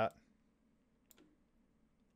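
Near-silent room tone with two faint, short clicks, one about a second in and one near the end, just after a spoken word ends.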